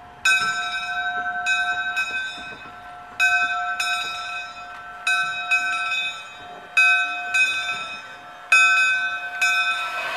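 The bell of Sandy River & Rangeley Lakes No. 6, a two-foot gauge steam locomotive, ringing as the train moves. It gives about fifteen strokes at an uneven pace, each one ringing on and fading before the next.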